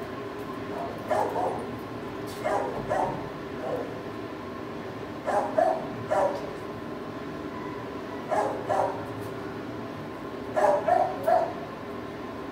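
Dog barking in short groups of two or three barks, about five groups spaced a couple of seconds apart.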